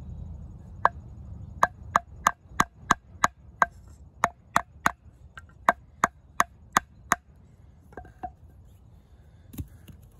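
A wooden baton repeatedly striking the spine of a Schrade Old Timer 169OT fixed-blade knife to drive it into a stick: about seventeen sharp knocks, roughly three a second, stopping about seven seconds in, then two fainter knocks near the end.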